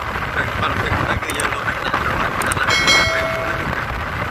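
Steady wind and engine noise of a motorcycle riding along a road. About three quarters of the way in there is a short pitched tone, rich in overtones, like a horn toot.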